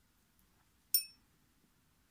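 A single bright clink about a second in, ringing briefly with a few high tones: a small glass bowl of pearl beads being knocked as it is handled.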